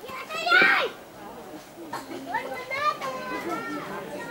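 Children's high-pitched voices calling out, loudest about half a second in, with more calls between two and three and a half seconds.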